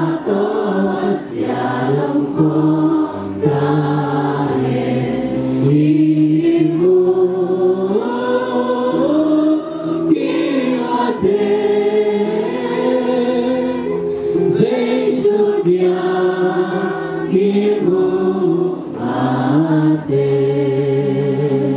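A group of voices singing a slow hymn together, holding long notes in phrases with short breaks between them.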